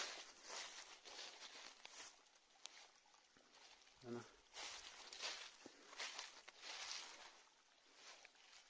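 Faint footsteps through dry fallen leaves and loose stones, an uneven series of rustling steps.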